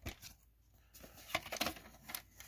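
Faint handling of a plastic VHS cassette, with a few short clicks in the second second as it is turned over and its dust flap is lifted to look at the tape.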